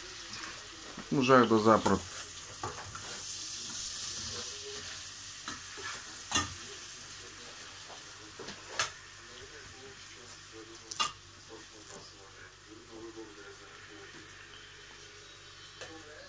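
Chicken gizzards and onion frying in a stainless steel pot: a steady sizzle that slowly grows fainter, broken by a few sharp clicks. A short, loud pitched sound comes about a second in.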